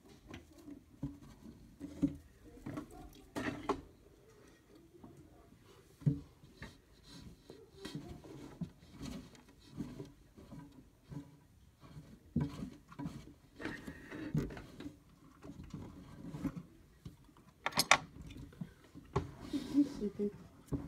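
Irregular rustling of fluffy paper hamster bedding being handled, with scattered light clicks and knocks and a couple of louder bursts.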